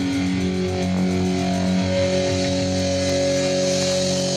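Live rock band playing an instrumental passage, electric guitars ringing out long held notes over bass and drums, with no vocals.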